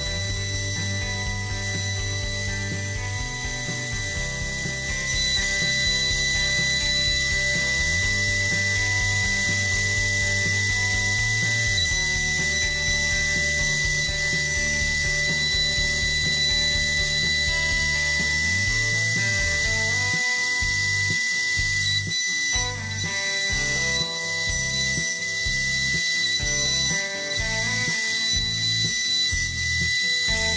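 A CNC router spindle running with a steady high whine while its end mill cuts a slot outline in plywood. Background music with low notes changing every few seconds plays over it and gains a rhythmic beat from about two-thirds of the way in.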